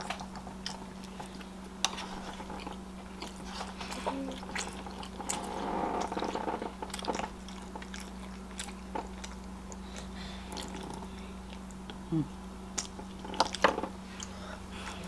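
Close-miked chewing and mouth sounds of someone eating pancakes and smoked sausage, with many scattered short clicks, most of them in a cluster near the end. A steady low hum runs underneath.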